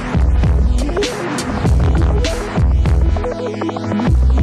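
Electronic background music with a heavy, throbbing bass line and regular drum hits. The bass drops out briefly near the end.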